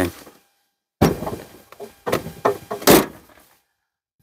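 A 1996 Buick Roadmaster wagon's door-style tailgate being swung shut: a clatter of knocks starting about a second in, then a loud thunk as it latches near the end.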